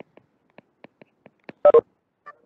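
Light taps of a stylus on a tablet screen while handwriting: about eight quick, faint ticks. Near the end come two loud, short, pitched blips.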